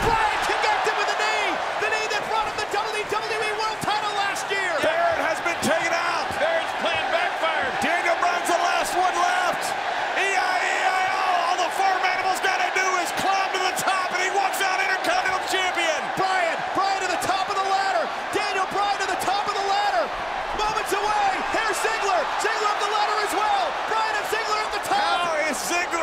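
A huge stadium crowd cheering and shouting without a break, with scattered sharp slams and knocks from wrestlers and steel ladders hitting the ring.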